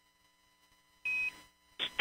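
Near silence, then about a second in a single short high beep with a brief burst of radio static as the air-to-ground radio channel is keyed. A man's voice comes over the radio just before the end.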